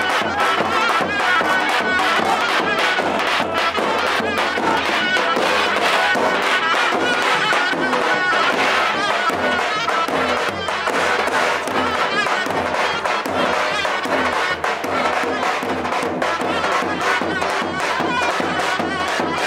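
Davul, the big double-headed bass drum, beating a steady dance rhythm under a loud, shrill reed melody in the manner of the zurna, with a crowd shouting along.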